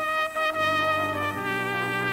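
Solo cornet playing sustained melody notes over a brass band's low accompaniment, the notes changing a few times.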